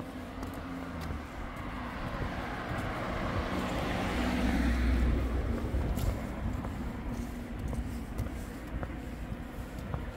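A car passes close by on the road: its tyre and engine noise swells to a peak about five seconds in and then fades away, over a steady background of traffic noise.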